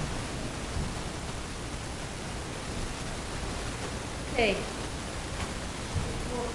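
Steady hiss of room tone picked up by the meeting room's microphone system, with one short sound falling in pitch about four and a half seconds in.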